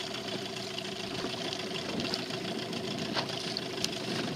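Motorboat engine idling with a steady hum.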